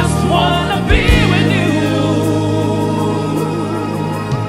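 A woman singing a gospel song solo into a microphone, with backing vocals and sustained instrumental accompaniment, and a drum hit about a second in.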